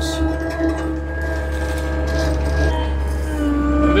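Cat 257B2 compact track loader's diesel engine idling steadily, a constant low hum with a faint steady whine over it.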